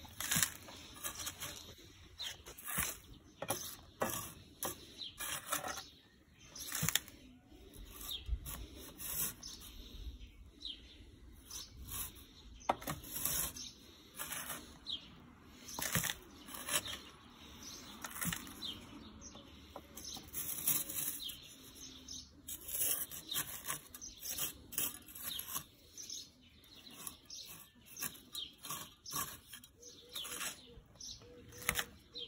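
Pointed steel trowel digging and scraping loose garden soil in many short, irregular strokes, scooping out the excess earth.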